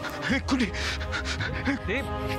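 Dramatic TV-serial background score with held notes over a low drone, under a man's short, breathy voice sounds as he pants in distress.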